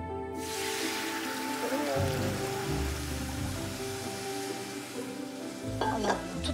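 Hot sugar syrup poured onto browned helva in a steel pot sizzles. A loud hiss breaks out about half a second in and slowly dies down as the paste takes up the liquid, with music over it.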